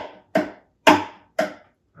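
Three evenly spaced knocks on the wooden body of a classical guitar, about two a second, each with a short hollow ring, beating out the rhythm of a knock on a door.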